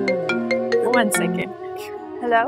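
Mobile phone ringtone: a quick, even run of marimba-like notes, about five a second, that stops about a second and a half in as the call is answered.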